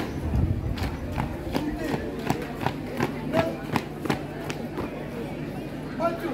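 Marching drill squad's boots striking pavement in step, a sharp strike about every third of a second, with a louder stamp right at the start. Voices murmur underneath.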